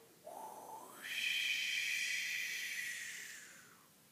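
A man imitating the wind with his voice and breath: a brief hooting "whoo", then a long breathy whoosh that swells about a second in and slowly fades out.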